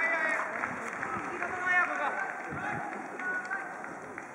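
Indistinct voices of rugby players and onlookers calling out in short, scattered shouts, with no clear words.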